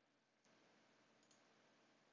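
Near silence: faint recording hiss, with one faint computer-mouse click a little over a second in.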